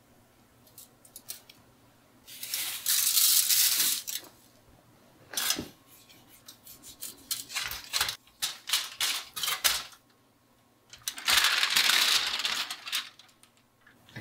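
Salt and pepper being dispensed over a raw joint of lamb: two spells of dry, grainy hiss, each about a second and a half long, one early and one near the end. In between come scattered small clicks and rustles as the seasoning is rubbed into the meat by hand on foil.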